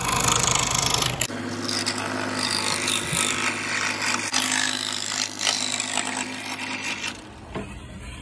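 Scroll saw running, its reciprocating blade cutting the outline of a wooden guitar headstock: a steady hum with sawing noise that dies away about seven seconds in.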